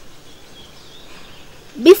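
Faint, steady outdoor background noise with no distinct events, then a voice begins speaking near the end.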